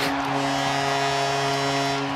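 Arena goal horn sounding one long, steady chord after a home goal, over general arena noise.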